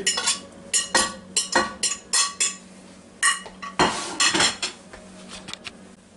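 A metal utensil clinking and scraping against a plate and the cooking pot as cut-up beef is put back into the pot: a dozen or so sharp, ringing clinks that thin out over the last second and a half. A faint steady hum runs underneath.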